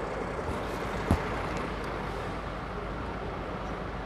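Steady city street traffic noise, with one brief knock about a second in.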